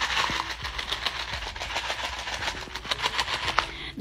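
Drinking from a red plastic cup held close to the phone's microphone: a rapid, crackly rattle of sips and handling noise.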